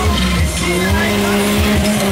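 Small off-road 4x4's engine revving hard and held at high revs as it climbs a steep dirt slope, with irregular low thumps.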